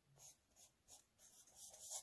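Felt-tip marker drawing on notebook paper: faint, short scratching strokes that grow louder near the end.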